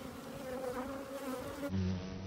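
A mass of honeybees buzzing on an open hive frame: a steady hum with a slightly wavering pitch. Near the end it changes abruptly to a lower, steadier hum.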